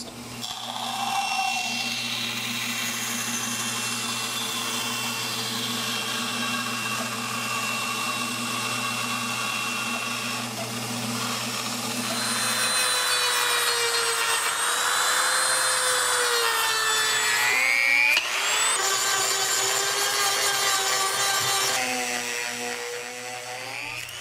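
Bandsaw running and cutting through the cured epoxy overhang on the edge of an oak table top: a steady motor hum with a whine. Later the pitch wavers and shifts as a power tool works the edge, with a sharp rising whine about three quarters of the way through.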